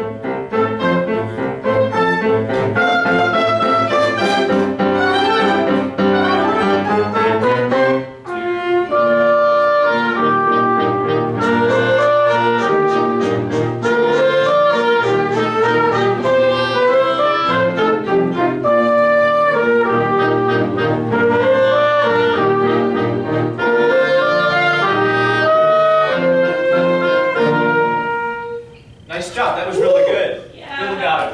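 A small classroom ensemble of mixed instruments, strings among them, playing a slow piece in held notes and changing chords. The playing breaks off briefly about eight seconds in and stops near the end, where a voice begins.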